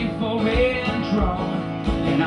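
Live acoustic guitar with a man singing a held, wavering note over the strumming in a folk-blues song.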